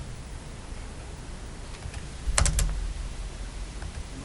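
Three quick clicks of laptop keystrokes, picked up by a table microphone, a little over halfway through, over a low steady room hum.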